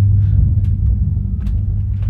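Loud, steady deep hum of a simulated submarine engine room, played as ambient sound in the exhibit.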